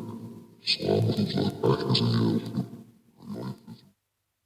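Hell Box ghost box app on a phone speaker putting out low, garbled, voice-like fragments, grunting and unintelligible: one long stretch and a shorter one near the end.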